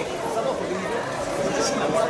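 Crowd chatter: many people talking at once, a steady mix of overlapping voices with no single voice standing out.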